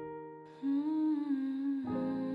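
Soft piano chords with a woman humming a wordless melody over them, her voice coming in about half a second in; a new piano chord is struck near the end.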